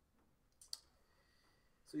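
A single short, sharp click about two-thirds of a second in, with a fainter one just before it, over quiet room tone.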